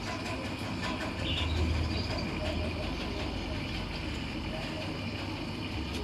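Steady low rumble over background noise, swelling a little about a second and a half in, with faint voices underneath.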